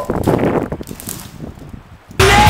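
Rushing, rustling noise of wind and movement on the camera's microphone, loudest in the first second and then fading.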